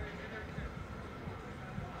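Outdoor background noise: indistinct voices in the distance over a steady low rumble.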